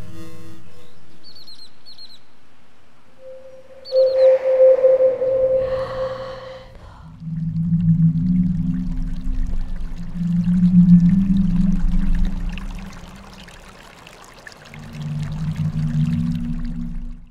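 Dark, ambient horror-film score. A held chord fades out at the start, then come three short high chirps and a loud sustained mid-pitched tone over a rushing noise. From about seven seconds in, deep low drones swell and fade, then rise again near the end.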